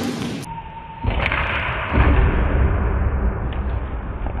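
Steady background noise of a large gymnasium hall picked up by a camera microphone, heavy in the low end, with one short tick about a second in.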